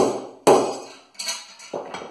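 Hammer blows striking a thin-ground 8670 steel knife blade, driving its edge against a metal rod in a destruction test of the edge geometry. Two sharp, ringing metal strikes about half a second apart come first, then two lighter knocks.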